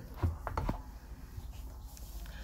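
A spoon stirring thick flour batter in a plastic container, with a few light clicks in the first second, then only a faint low rustle.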